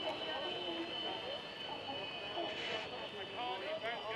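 Faint voices talking over a steady high-pitched whine.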